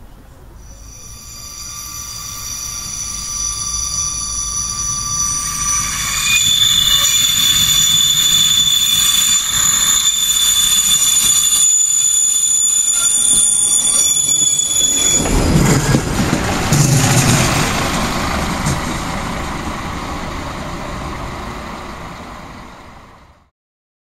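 A Vogtlandbahn RegioSprinter railcar's wheels squeal through a curve: several high, steady whistling tones grow louder for about fifteen seconds, then stop abruptly. A loud, deeper rolling rumble of the railcar passing close follows and slowly fades.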